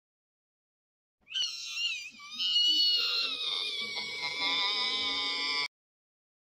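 A shrill, high-pitched wailing cry, wavering in pitch for its first second and then held in a long drawn-out wail, cut off abruptly near the end.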